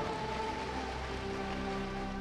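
Applause from a congregation of many people clapping, an even patter, with a soft held chord of background music under it.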